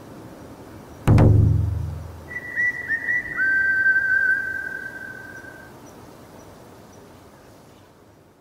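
A single heavy thud with a deep booming tail, the loudest sound, about a second in. Then whistling: a few quick notes that flick up into a high pitch, followed by a longer, slightly lower held note, fading away afterwards.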